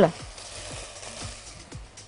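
Faint, steady sizzling from chopped onion, garlic and spices frying in ghee and oil in a pot, with a few light ticks.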